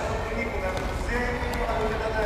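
Voices calling out in a large indoor tennis hall, with light knocks of tennis balls being hit by rackets and bouncing on the court.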